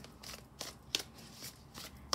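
A deck of tarot cards being shuffled by hand, quiet soft flicks and taps of the cards against each other.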